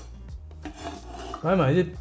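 Chinese cleaver scraping across a wooden cutting board, sweeping julienned carrot strips onto the blade: a soft rasp with no chopping strokes, followed by a brief spoken word near the end.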